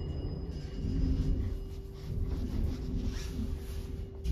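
Montgomery hydraulic elevator car in motion, heard from inside the car: a low rumble with a steady mechanical hum.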